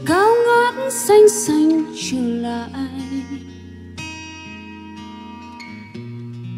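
Live acoustic ballad: a woman singing into a microphone over guitar and held accompaniment chords. Her voice slides up into the first note, and the phrase gives way to sustained instrumental tones in the second half.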